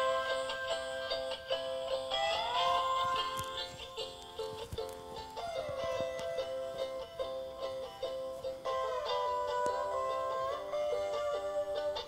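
Cloud B Charlie chameleon night-light plush playing its built-in tropical tune: a light melody of held notes with a few sliding notes.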